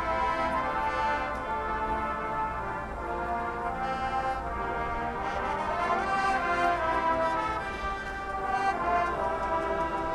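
High school marching band playing a brass-led passage of held chords.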